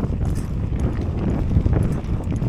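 Mountain bike rolling over rough trail: a steady low rumble with many irregular knocks and rattles, and wind buffeting the microphone.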